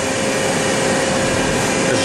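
DMG Gildemeister Twin 65 CNC lathe running: a steady, even machine noise with a constant whine underneath.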